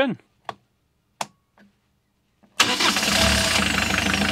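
Two short clicks, then about two and a half seconds in a Volvo Penta D2-40 marine diesel starts and keeps running steadily, started from a homemade backup start panel that bypasses the engine's MDI box.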